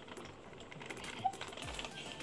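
Light, irregular clicks and rustling from a plastic bag being handled over a steel mixing bowl.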